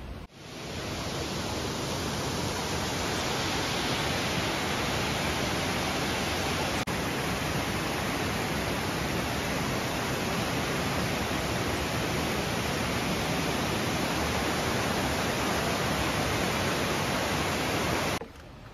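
Waterfall and cascading river water, a steady loud rush of white water that fades in at the start and cuts off at the end.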